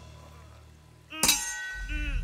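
A sharp metallic clang about a second in, leaving a steady high ringing tone, then a second clang at the very end, with a low rumble setting in beneath: dramatic film sound effects on a movie soundtrack.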